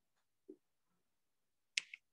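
Quiet room tone broken by a soft low knock about half a second in, then a sharp click near the end with a smaller click right after it.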